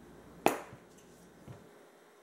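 A sharp plastic click as the flip-top lid of a spice shaker is snapped open, then a softer click about a second later.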